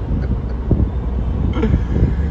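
Steady low rumble of a moving car heard inside the cabin, with wind buffeting a phone's microphone.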